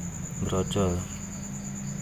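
An insect keeps up a steady, high-pitched trill in the background, with a short murmur of a man's voice about half a second in.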